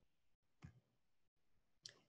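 Near silence, broken by two faint short clicks, one about half a second in and one near the end.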